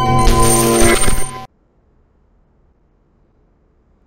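Logo intro sting: music with steady chiming tones and a bright, glittering shimmer that cut off suddenly about a second and a half in, followed by near silence.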